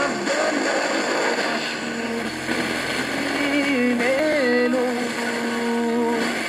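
Distant FM broadcast received by sporadic E on a TEF6686 receiver: heavy static hiss with faint music and a singing voice coming through, a long held note near the end.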